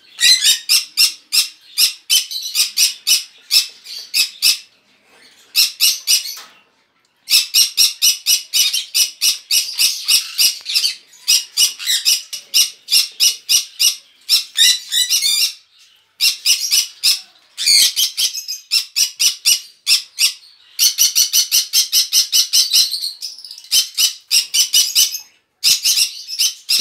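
Green-cheeked conures (a yellow-sided and pineapple pair) screeching in rapid runs of harsh squawks, in bursts of a few seconds with short breaks, as a hand opens their cage beside the nest box: the calls of birds disturbed at the nest.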